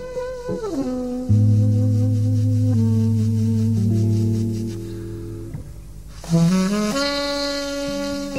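Jazz recording: a tenor saxophone playing long held notes over keyboard chords and bass, growing softer in the middle and swelling again near the end.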